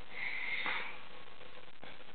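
A short sniff, then a couple of soft knocks from a cardboard board book's pages being handled.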